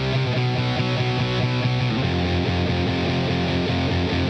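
Electric guitar with distortion playing sustained notes and chords, moving down to a lower note about two seconds in.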